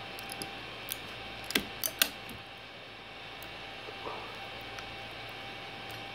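A metal spatula clicking and scraping against a 3D printer's build plate and the base of a print as it is worked underneath, a few sharp clicks in the first two seconds, over a steady low hum.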